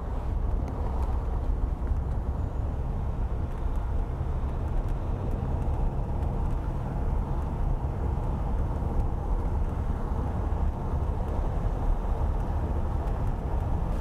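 A car driving at a steady speed, heard from inside the cabin: engine and road noise as an even low rumble.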